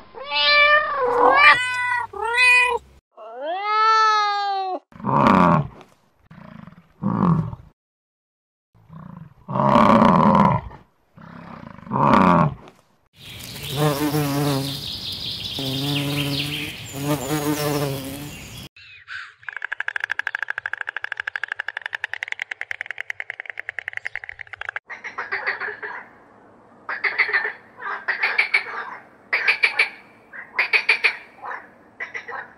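A string of different animal sounds. First kittens mew several times, in high rising-and-falling cries, followed by several shorter calls. Then an insect buzzes steadily for about five seconds, and a European green toad gives one long, even trill of about six seconds, followed by short trilled calls near the end.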